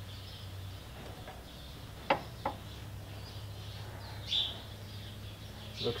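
Two sharp clicks about half a second apart from the key switch and glow-plug relay of a John Deere F1145 diesel mower, switched on with a weak battery.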